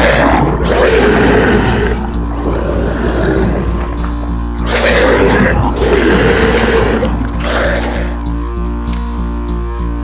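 Dramatic background score over a steady low drone, with several rough, growl-like monster sound effects, the last about seven seconds in. After that the music carries on alone as a pulsing beat.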